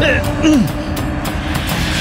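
A man's brief cry, falling in pitch, about half a second in, over a dramatic background score with a steady held note and a heavy low rumble.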